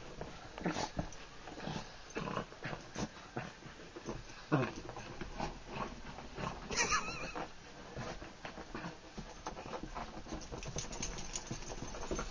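Small dog making short scattered vocal noises while squirming and rolling on its back on carpet, with a brief high whine about seven seconds in.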